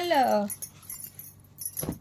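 Glass bangles clinking faintly on a wrist as a silk saree is unfolded and spread out, the fabric rustling, with one short sharp swish of the cloth near the end.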